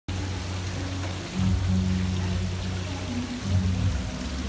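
Background music with a low bass line, over a steady hiss of running water.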